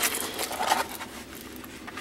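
Diamond painting canvas with a clear plastic cover film rustling and crinkling as it is unrolled and smoothed flat by hand, a run of short scratchy rustles.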